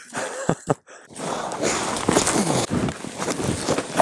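Rustling and crunching of a person moving over snow, ice and sticks, with scattered clicks and knocks, from about a second in.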